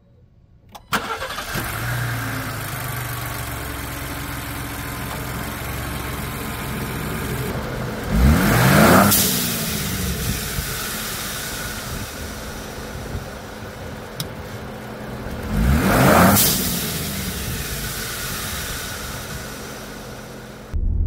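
Turbocharged 2024 Ford Bronco engine, fitted with a blow-off valve adapter, starting about a second in and settling into an idle. It is then revved twice, about eight seconds apart. Each rev rises and falls in pitch, with a brief high hiss at its peak.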